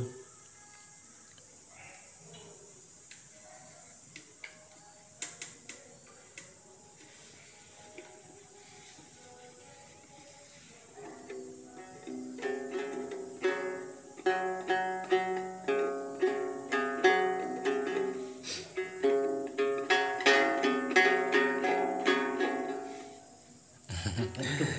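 A Tày đàn tính, a long-necked lute whose body is half a dried gourd, plucked: a few faint, scattered notes at first, then from about halfway a steady run of rapid strummed notes that stops shortly before the end. The player is untrained and is only showing what the instrument sounds like.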